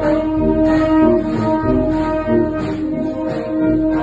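Wind band playing a march, saxophones and brass together holding sustained chords.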